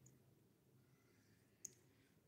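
Near silence with a single sharp click about one and a half seconds in: a tiny spoon tapping against a miniature bowl of food as it is stirred.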